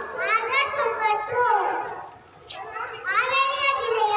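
A young boy speaking into a handheld microphone, with a short pause a little past halfway.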